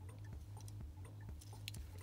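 Faint handling noise: a few light clicks and rubs as a small die-cast toy truck is turned over in the fingers, over a steady low hum.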